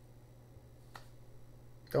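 A pause with a faint steady low hum, broken by one soft, sharp click about a second in.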